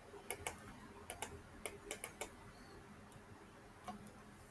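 Faint clicks of a computer mouse and keyboard as on-screen text is selected and deleted: about nine sharp ticks at irregular intervals, some in quick pairs.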